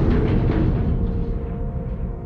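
Deep rumbling tail of a produced explosion sound effect, fading steadily, under a few held low musical tones.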